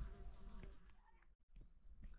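Faint buzzing of a flying insect, which cuts off abruptly a little past halfway.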